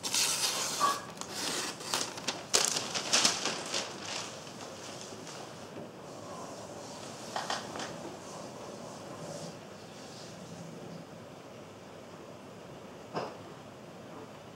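Sheets of newspaper rustling and crinkling in the hands, densest over the first few seconds, then dying away to a quiet room with a couple of light clicks.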